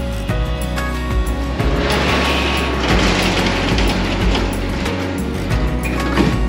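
Background music, with a steel roll-up storage-unit door running down for about four seconds as a noisy mechanical rattle.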